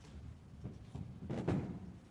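A person sitting down on a chair: soft low thumps and clothing rustle, with one louder thud about one and a half seconds in.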